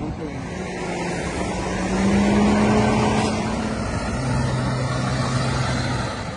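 A white motor coach driving past close by, its diesel engine humming steadily over road noise. It grows louder to a peak about two to three seconds in, then eases as the coach pulls away.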